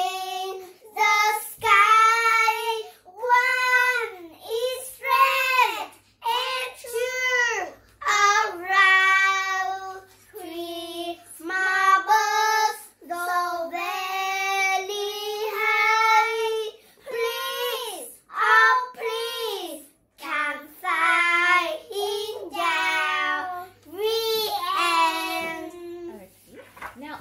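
Two young girls singing an English children's song about three birds high in the sky, unaccompanied. The song is sung in short phrases with brief breaths between them.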